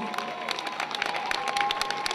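A congregation applauding in acclamation: many hands clapping in a dense, uneven patter.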